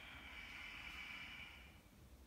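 A woman's slow exhale: a faint, steady breathy hiss that fades out shortly before the end.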